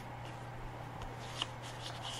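Faint rustling of cardstock and paper handled by hand at an envelope pocket, with a small tick about a second and a half in.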